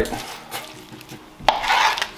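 Kitchen handling noise: a sudden slap about one and a half seconds in, followed by a short rustle, as a plastic sheet is spread over a plastic cutting board.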